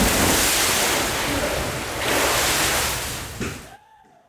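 Ocean surf: waves washing in with two swells of rushing water, then fading out near the end.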